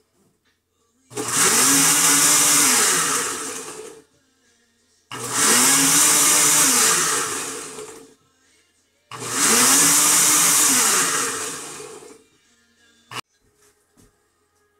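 Countertop blender running its smoothie program: three pulses of about three seconds each, the motor speeding up and then winding down in each, with about a second's pause between them. A short click follows near the end.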